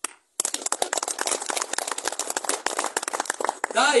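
Applause from a seated crowd: a burst of fast, dense hand clapping that starts abruptly about half a second in and dies away just as the speaker's voice returns near the end.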